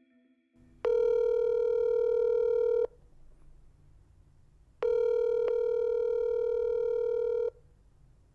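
Telephone ringback tone heard through the caller's line: two long steady tones, about two seconds and then nearly three seconds, with a pause between them. The call is ringing at the other end and has not yet been answered.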